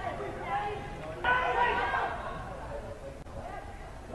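Faint, indistinct voices from a football pitch, players calling to each other over a low open-air hum, with a single short word of commentary about a second in.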